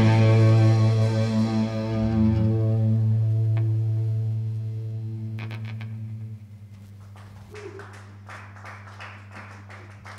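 A rock band's final chord on distorted electric guitars and bass ringing out and slowly fading over about six seconds. After it, only a steady low amplifier hum and a few faint clicks remain.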